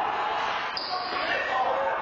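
A rubber handball struck and bouncing off the floor and walls of an indoor handball court, echoing in the hall, with players' voices.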